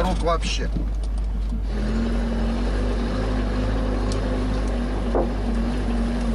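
A vehicle's engine running steadily along with road noise, heard from inside the cabin while driving a rough dirt road: an even, unbroken low drone with a faint knock about five seconds in.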